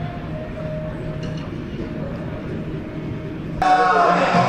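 Steady outdoor background hum with faint voices. Music cuts in loudly just before the end.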